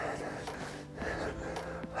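A man's forceful breath out at the top of a kettlebell swing, followed by quieter breathing during the next swing.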